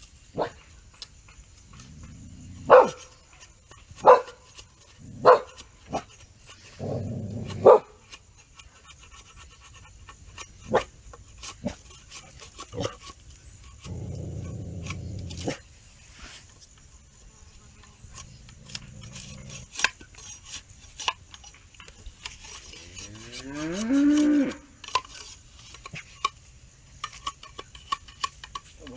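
A machete chopping and shaving a wooden stick to shape it into a sledgehammer handle: several sharp chops in the first eight seconds, then lighter taps. A cow moos once, rising and falling, about three-quarters of the way through.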